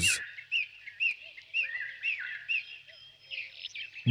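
Small birds chirping: a run of short, quick chirps, about two or three a second, thinning out near the end.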